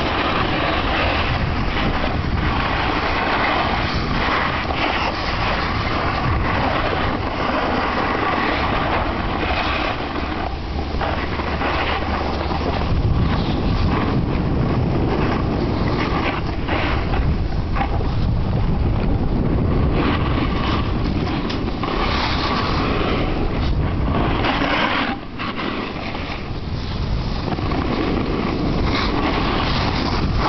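Steady rush of wind buffeting the microphone, with snowboards scraping and sliding over packed snow as the riders move downhill. The noise drops briefly about 25 seconds in, then picks up again.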